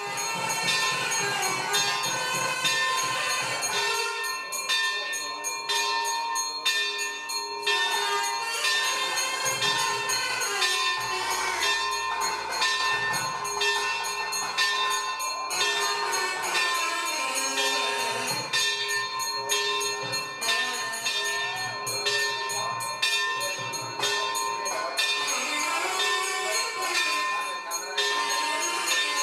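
Temple bells rung rapidly and continuously, the strokes blending into one steady metallic ringing, as at the lamp offering (aarti) before a Hindu shrine.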